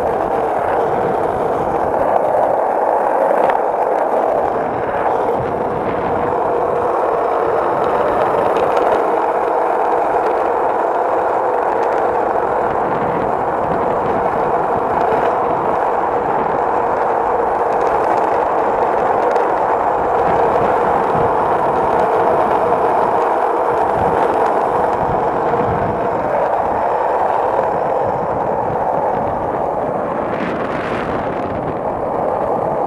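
Skateboard wheels rolling steadily over asphalt, a constant rolling noise with no break.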